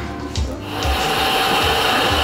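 Background music, joined about a second in by a loud, steady machine hiss that runs on without a break.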